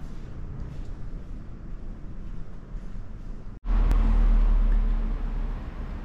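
Low steady street noise, then after an abrupt cut a little past halfway, a much louder low rumble with a steady hum: a motor vehicle engine running close by.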